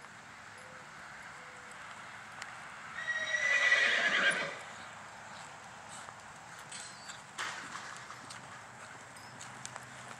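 A horse neighs loudly once, a few seconds in, a shaky whinny lasting about a second and a half. Around it are the hoofbeats of a horse trotting on arena dirt.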